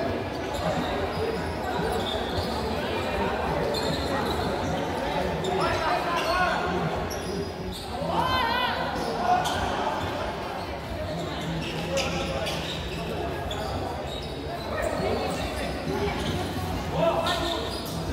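Sound of an indoor futsal game in a gym hall: players and spectators shouting, with the thuds of the ball being kicked and bouncing on the court.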